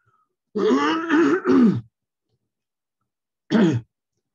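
A man clearing his throat with voiced grunts for over a second, starting about half a second in, then once more briefly near the end.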